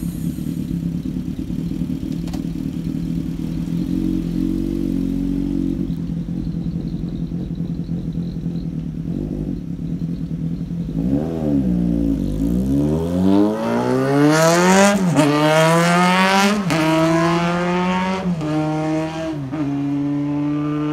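Honda CBX550F Integra's inline-four engine with an aftermarket RPM exhaust, idling steadily for about ten seconds. It is then revved as the bike pulls away and accelerates through the gears, its pitch climbing and dropping back at each of four upshifts.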